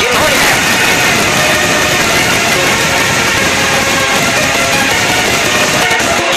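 Loud background music track in a dense, noisy passage with little clear melody, like a rushing or engine-like swell running through this stretch of the song.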